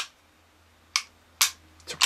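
Two sharp clicks from a Beretta PX4 Storm pistol's trigger mechanism, about half a second apart, as the trigger is worked to check its reset. The reset is pretty short.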